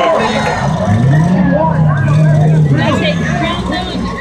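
Demolition derby car engine revving: it climbs in pitch about a second in, holds, and drops back near the three-second mark, over spectators' chatter.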